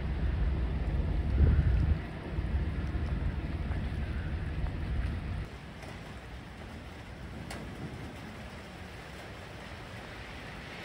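Low rumble of a train moving away along the tracks, briefly louder about one and a half seconds in. It cuts off at about five and a half seconds to a much quieter steady background rumble.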